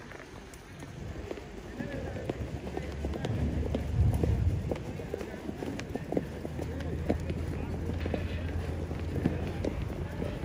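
Horses' hooves clopping on a paved walkway at a walk, an irregular run of short clicks, over a low steady rumble.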